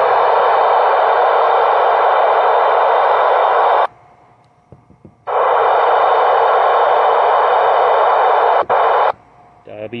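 Two-way radio static: an Icom ID-4100A 2m/70cm transceiver's speaker gives two loud, steady bursts of hiss, each about four seconds long. Each burst cuts in and out abruptly, with a gap of about a second and a half between them. There is a click near the end of the second burst.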